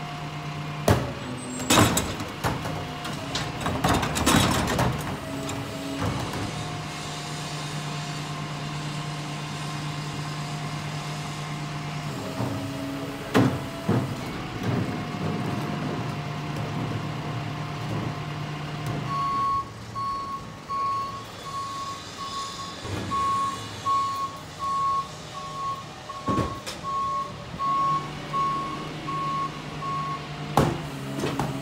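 Rear-loading garbage truck: engine running steadily with a higher steady whine, and sharp clanks in the first few seconds as carts are tipped against the hopper. About two-thirds of the way in the engine note drops away and the truck's reverse alarm starts beeping evenly, about once a second.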